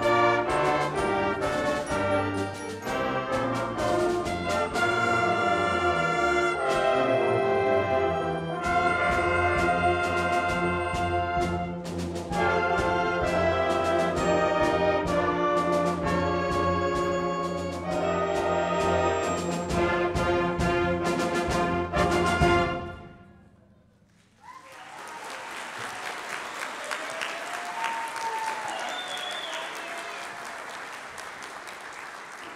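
A school concert band of brass, woodwinds and percussion plays the closing bars of a piece, ending on a loud final chord that dies away a little over 20 seconds in. After about a second of near silence, the audience breaks into applause.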